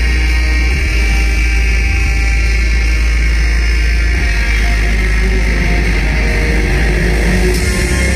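Live industrial metal played loud through a venue PA: a heavy, distorted low end from bass guitar and electronics over drums, steady and unbroken.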